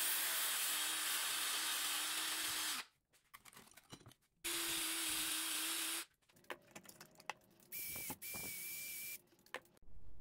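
Cordless drill spinning a wire wheel brush against a cast aluminium block, scrubbing off black tarnish. It runs in three bursts: one of about three seconds, one of about a second and a half, then a shorter, quieter one with a higher whine, with a few light taps between them.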